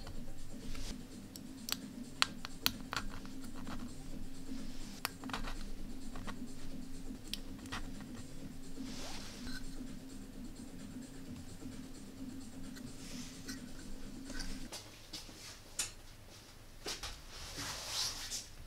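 Small plastic-and-wire clicks and light scrapes as transistor leads are pushed through the holes of a printed circuit board and the board is handled. A low steady hum underneath stops about 15 seconds in.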